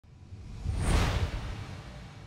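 A whoosh sound effect for an animated logo intro, with a low rumble beneath it, swelling to a peak about a second in and then fading away.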